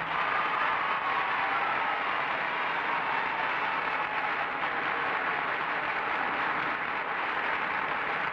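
Studio audience applauding steadily for several seconds, the welcome for the show's host as he comes on.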